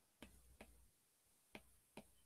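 Near silence with four faint ticks of a stylus tapping on a tablet screen as strokes are drawn, spread over two seconds.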